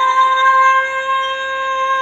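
A man singing unaccompanied, holding one long high note at a steady pitch. A slight waver comes into the note near the end.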